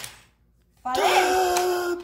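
Near silence for most of the first second, then a person's voice holding one long, steady exclamation to the end.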